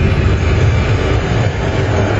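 Film soundtrack: a loud, steady, dense rumble of sound design and score.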